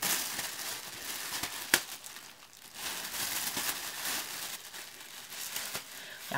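Thin clear plastic cap crinkling as it is pulled on over conditioner-coated hair and adjusted by hand, with a single sharp click a little under two seconds in.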